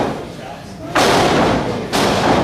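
Wrestlers' impacts in a wrestling ring: a sharp thud at the start, then about a second in a loud noisy burst lasting about a second, with another thud at the end. Voices are heard throughout.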